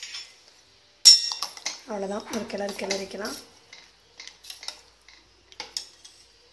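Steel ladle striking and clinking against a stainless steel cooking pot as the sambar is stirred: one sharp clank about a second in, then lighter clinks near the end.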